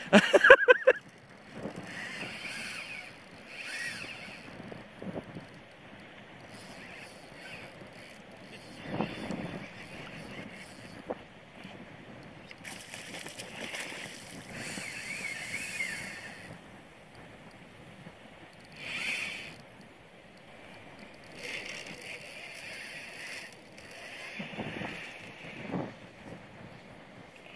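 A spinning reel being wound in on and off in spells of a second to a few seconds, with water sloshing and gurgling against a plastic kayak hull.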